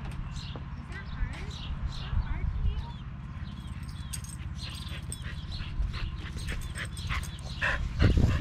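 A dog whining and yipping in short calls, over a steady low hum.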